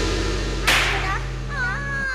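Live campursari band holding a sustained low chord, with a sharp cymbal-like crash about two-thirds of a second in; the held chord cuts off at the end. From about a second in, a wavering high-pitched voice rises and falls over it.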